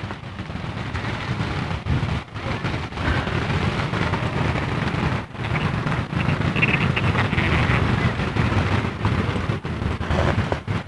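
Wind rumbling and buffeting on the microphone outdoors, a steady low noisy rumble that rises and falls irregularly.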